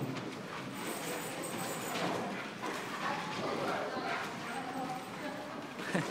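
Indistinct chatter of people in a large hall, with dogs' claws and people's footsteps tapping on the wooden floor as the dogs are walked on leads.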